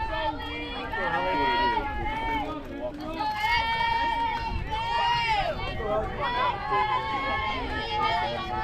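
Several high voices chanting and calling out together over one another, with long drawn-out sung pitches, in the manner of a softball team's dugout cheer.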